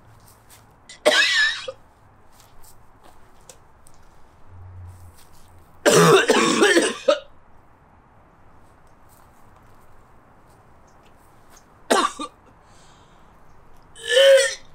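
A man coughing in three fits, the longest and loudest about six seconds in, a brief one near the end. He is choking on the stench of rotting food in a fridge long left without power.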